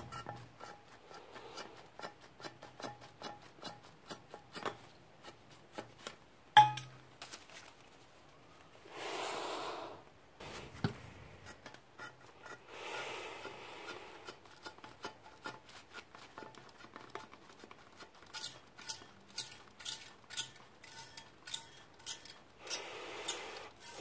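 Plastic trigger spray bottle being pumped again and again, its trigger clicking, with only three short hisses of spray: the nozzle is partly clogged. A sharper knock comes about six seconds in, and the clicks speed up to about three a second near the end.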